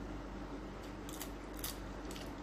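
Crisp crunching of raw vegetable being bitten and chewed by a person, with a couple of sharp crunches about a second in and again near the end, over a faint steady hum.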